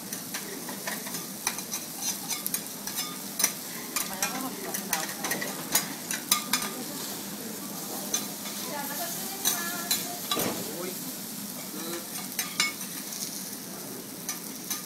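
Meat and vegetables sizzling on a flat steel teppanyaki griddle, with frequent sharp clicks and scrapes of a metal spatula against the plate.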